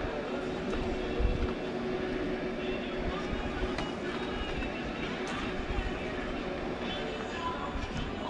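Indistinct distant talk over a steady background hum, with a few faint clicks as shirts on hangers are pushed along a metal clothes rack.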